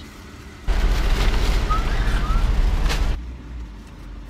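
Loud rustling, rumbling noise right at the microphone for about two and a half seconds, starting under a second in, as a plastic takeout bag is handed in through the car window and handled close to the camera.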